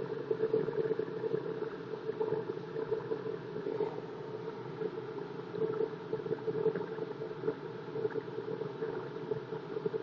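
Wood lathe running with a steady hum, a hand-held turning tool scraping the spinning HDPE plastic handle.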